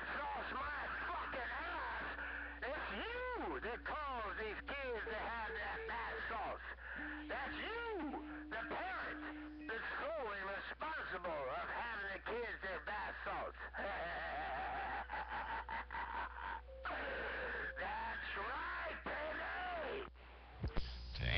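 CB radio receiving a strong transmission: a busy stream of rising and falling whistles and warbles over the channel, with a couple of short steady tones. It drops out briefly near the end.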